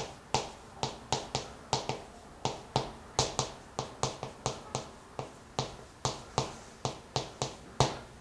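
Chalk striking a chalkboard as characters are written: a quick, irregular run of sharp clicks, about three a second.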